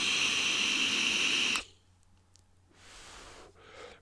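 Direct-lung draw on a Smok TF sub-ohm tank with its airflow fully open at 70 watts: a steady airy hiss of air rushing through the airflow slots, which stops suddenly about one and a half seconds in. A softer breathy exhale follows near the end.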